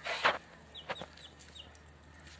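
Domestic hens clucking as they peck at feed: one loud cluck at the start, then a couple of softer, shorter sounds about a second in.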